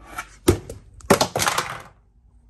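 Plastic storage bin and its lid being handled and knocked about: a sharp plastic knock about half a second in, then about a second of clattering and rattling.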